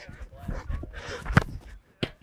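A soccer ball kicked hard in a shooting drill: a sharp thud about one and a half seconds in, the loudest sound, with a fainter strike at the start. Players' voices call faintly in between.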